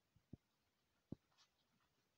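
A few faint taps of handwriting on a tablet touchscreen, sparse against near silence, the clearest about a second in.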